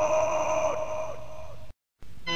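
The last chord of a melodic doom/death metal track, on distorted electric guitar, ringing out and slowly fading, then cutting off to silence just before the end.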